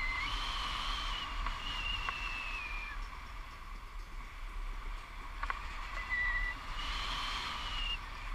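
Wind rushing over the camera microphone in flight under a tandem paraglider. A thin, high whistle-like tone sounds over it for about two and a half seconds just after the start, briefly about six seconds in, and again near the end.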